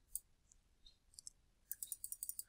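Faint computer-mouse clicks: a single click, then a quick run of scroll-wheel notch clicks near the end as the document page is scrolled down.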